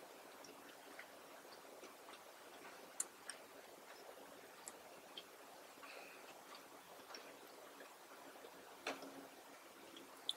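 Very quiet closed-mouth chewing: faint, scattered soft wet mouth clicks at irregular intervals, with a sharper click about three seconds in and another near the end.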